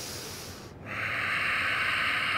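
A person breathing audibly: a soft breath, then a long, louder exhale starting about a second in.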